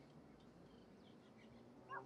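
Near silence with only faint background noise and a few faint, short high-pitched blips. A voice starts up right at the end.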